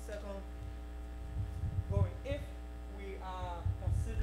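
Steady electrical mains hum from the sound system, with faint speech from a voice away from the microphone and a few low bumps in the middle and near the end.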